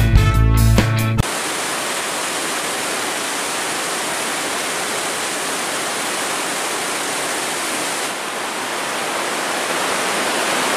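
Music ends about a second in, then a steady rush of turbulent water pouring through an open sluice gate.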